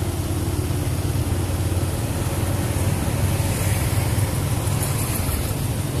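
Steady low engine rumble of a slow-moving road vehicle, with an even hiss above it.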